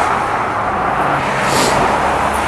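Steady street traffic noise: passing cars and tyre rumble on the road, with no single event standing out.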